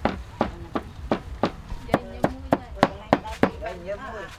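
A cleaver chopping garlic on a round wooden chopping board, about three sharp strokes a second.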